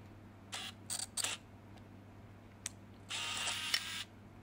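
Film camera shutter firing: a few short clicks in the first second and a half, a single sharp click a little later, then a longer mechanical whirr of just under a second near the end.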